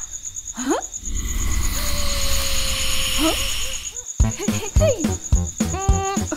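Night ambience sound effect: a steady, rapid, high chirping of crickets throughout. It is joined in the middle by a swelling hiss with one held note, and near the end by a quick run of short frog-like calls.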